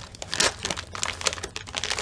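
A packaging bag crinkling and rustling as it is worked and torn open by hand, with irregular crackles.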